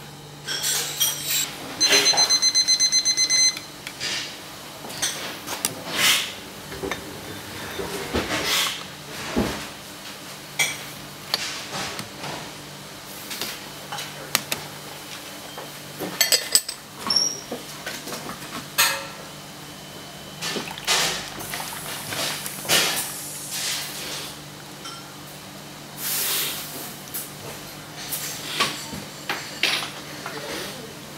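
A digital kitchen timer beeps rapidly for about a second and a half, marking the end of the brewing time. Then porcelain clinks and knocks come from a tea-tasting set's lids, mug and bowl being handled, and brewed tea is poured out of the tasting mug into its bowl.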